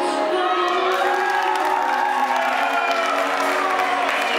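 Live rock band playing, with a long held note sliding in pitch across most of the moment, over crowd cheering.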